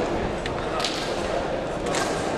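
Murmuring voices in a large fencing hall, with a few short, sharp swishing clicks. The sharpest comes just under a second in.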